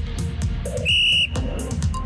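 Electronic dance music with a steady beat, with one short, shrill whistle blast on a single flat note about a second in.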